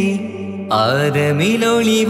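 Malayalam Mappila devotional song: a sung line gliding in pitch over a steady held drone, with a short dip in loudness before the voice swells back in less than a second in.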